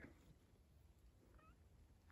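Near silence, with one faint, short meow from a cat about one and a half seconds in.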